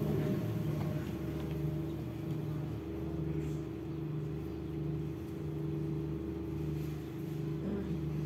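A steady low hum with a slow, regular pulse about once a second.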